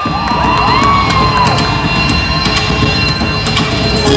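Loud live dance music from a stage show's sound system, with the audience cheering over it; high voices whoop in rising and falling glides during the first second or two. Heard from the audience seats of a large hall.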